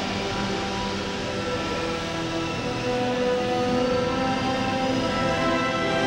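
Background music from a show soundtrack: slowly changing held chords, heard through loudspeakers in a hall.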